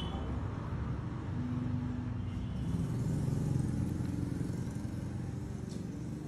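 Steady low background rumble, with a faint droning tone in it.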